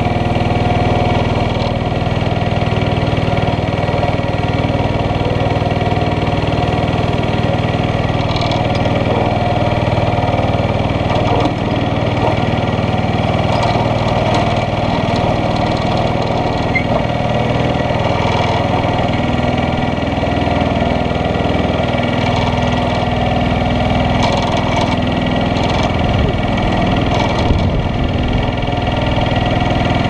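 Small go-kart engine idling steadily, close up, while the kart stands still.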